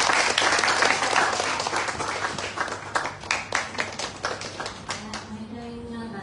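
Audience applauding to welcome performers onto a small stage: dense clapping at first, thinning to scattered claps that die away about five seconds in.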